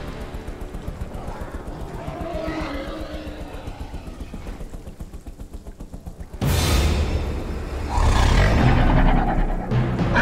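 Film soundtrack: quiet, tense score with a quick, even low pulse, cut about two-thirds of the way in by a sudden loud burst of sound that builds again near the end.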